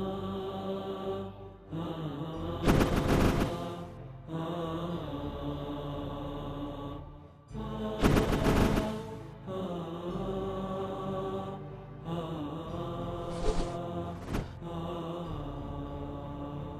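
Background music of long, held, chant-like tones, with loud whooshing transition hits about three seconds in and again about eight seconds in, and two shorter ones near the end.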